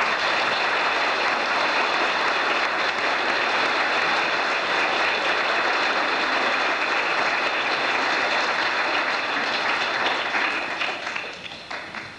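A congregation applauding, starting suddenly and holding steady for about ten seconds before dying away near the end.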